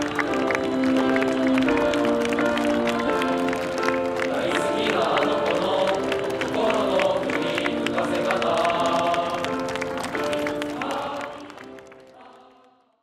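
Choral music, voices holding long chords, over steady clapping; it fades out near the end.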